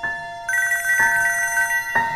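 Mobile phone ringing with an electronic ringtone: steady tones, then a fast warble from about half a second in.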